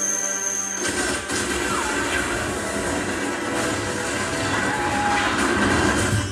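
Film trailer soundtrack playing: music over a dense low rumble and clatter that starts about a second in.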